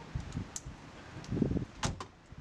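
Low thumps and sharp clicks as people climb out of a car with its doors open, the sharpest click just before the end.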